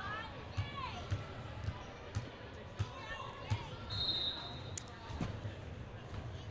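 Basketball bouncing on a gymnasium floor: a string of short, dull thuds, roughly every half second to second, under faint distant voices. A short, high, steady tone sounds a little past the middle.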